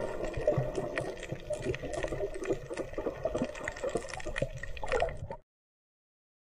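Underwater sound picked up by the camera: water moving and bubbling, with a dense stream of small clicks and crackles. It cuts off suddenly about five seconds in.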